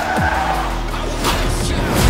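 Dramatic score mixed with a car's engine and tyres squealing, with a short sharp hit a little after halfway through.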